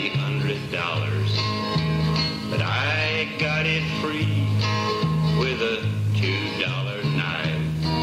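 Country song's instrumental break: a guitar lead with bent, sliding notes over a stepping bass line.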